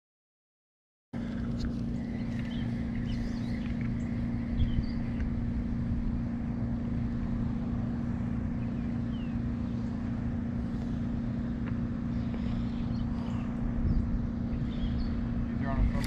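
A steady low hum over a rumbling low noise, starting suddenly about a second in after silence, with a few faint high chirps.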